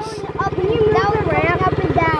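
Small single-cylinder pit bike engine idling steadily, with a child's high voice talking over it.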